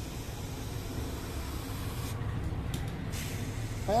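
Steady hiss of air blowing powder out of a homemade powder coating gun, a glass jar with plastic pipes, in a fine spray. The upper part of the hiss drops away for about a second midway.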